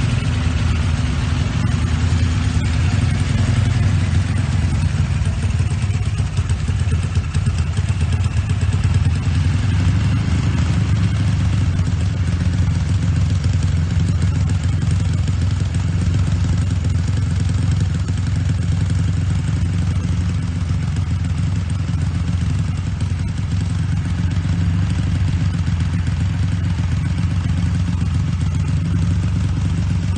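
Single-cylinder engine of a 1999 Honda Titan motorcycle, a Titan 150 engine stroked out to 273 cc, running steadily at a constant engine speed through an aftermarket KS Racing exhaust muffler.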